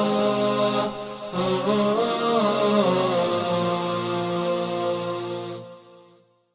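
Chanted vocal music: a voice carries an ornamented, sliding melody, pauses briefly about a second in, then settles into a long held note that stops just before the end.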